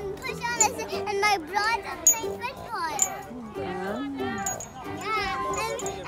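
Children's voices, with high-pitched chatter and calls, over steady background music.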